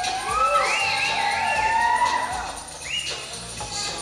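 Recorded music playing for a stage dance number, with a string of high rising-and-falling pitch sweeps over it in the first two seconds and another near the end.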